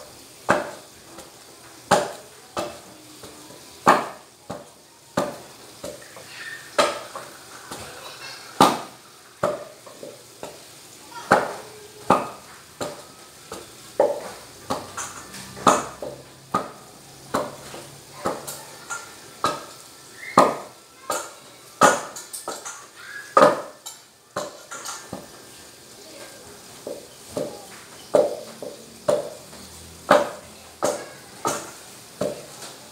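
Wooden pestle pounding boiled bananas in a stainless steel pot, mashing them into nilupak: a thud with each stroke, a little over one a second, some strokes harder than others.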